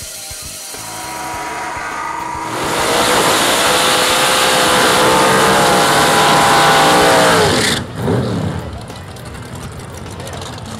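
Drag racing car doing a burnout: the engine climbs to high revs over the first few seconds and holds there under a loud hiss of spinning, smoking tyres, then cuts off abruptly about eight seconds in.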